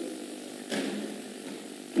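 A pause in speech filled by a steady faint hum and hiss picked up by a desk microphone. There is a brief soft rush of noise about three-quarters of a second in.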